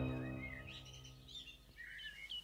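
The tail of a music chord fades away, leaving faint birdsong: a few short songbird chirps about half a second in and again near the end.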